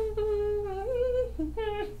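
A woman humming a short tune of a few held notes that step up and down, without words.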